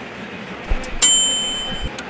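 A single bright bell ding about a second in, ringing for just under a second and then cutting off abruptly, with a soft low thump just before it.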